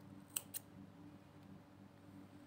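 Small thread snips cutting a crocheted flower's acrylic yarn tail: two sharp snips in quick succession about half a second in.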